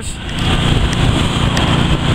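Heavy construction machinery engine running steadily, a continuous low noise with no breaks.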